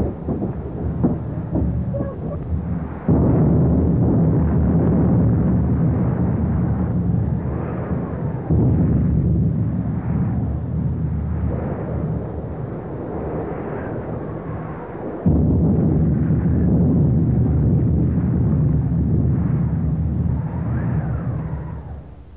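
Storm sound effect of roaring wind and heavy sea, a dense, steady rumble that jumps abruptly louder about three seconds in, again near eight seconds and again near fifteen seconds. Faint rising and falling howls of wind sound over it, and it fades down at the very end.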